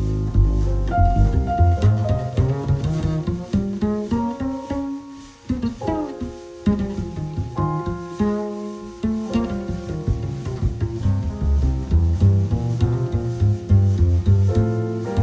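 Instrumental break in a jazz ballad arrangement: an upright double bass plucked, with cello and violin. The music thins out briefly about five seconds in, then fills out again.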